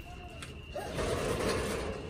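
A metal mesh gate being pushed open, with a mechanical rattle that starts about a second in.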